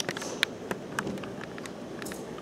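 A handful of short, sharp light clicks and taps at irregular intervals over faint steady room noise.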